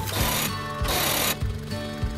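Background music, over which hand pruning shears cut through hedge leaves twice: two brief, hissing rustles about a second apart.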